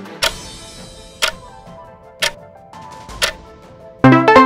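Countdown-timer tick sound effect, one sharp tick a second, four times, over soft background music with held tones.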